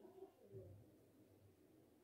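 Near silence: faint room tone with a few faint low-pitched sounds.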